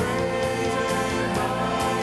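Worship song: several voices, lead singers on microphones with a choir, singing held notes over instrumental accompaniment.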